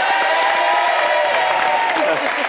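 Studio audience applauding and cheering.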